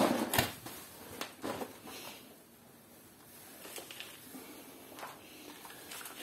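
Handfuls of loose soil being dropped and pressed into a plastic plant pot: a crumbly rustle strongest right at the start, then scattered light scrapes and crackles.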